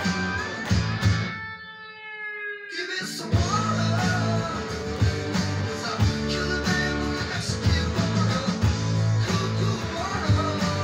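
Electric guitar playing a rock song along with a full band backing of drums and bass. About a second in, the band drops out, leaving one held chord ringing, and the full band comes back in at about three seconds.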